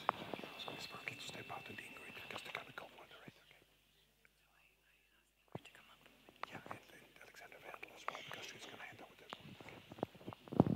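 Faint hall sound of low murmured voices with small scattered clicks and rustles, dropping to near silence for about two seconds in the middle.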